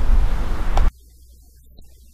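Wind buffeting the microphone: a loud, low roar that cuts off suddenly just under a second in, leaving only a faint low hum.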